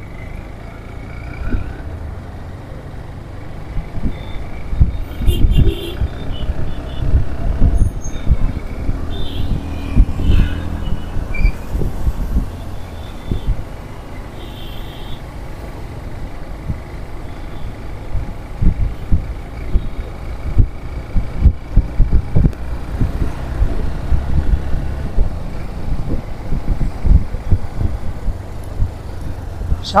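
Road traffic heard from a moving vehicle: engine and tyre noise, with wind rumbling on the microphone in uneven gusts.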